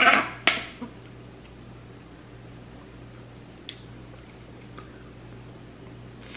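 A short plastic click of a drinking straw being moved in a lidded cup, then a quiet room with a steady low hum and one faint tick a few seconds later.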